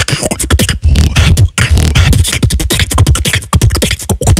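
Solo beatboxing: a fast, dense vocal beat of deep bass kicks packed with sharp snare and hi-hat clicks, several strokes a second.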